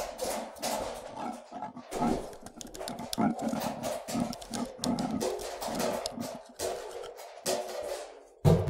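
Experimental noise and sound-art music: a dense, irregular texture of clicks and crackles over a rough mid-range layer that swells and breaks every fraction of a second, with no steady beat.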